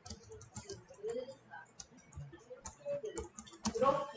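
Typing on a computer keyboard: a quick, irregular run of key clicks as a short sentence is typed out.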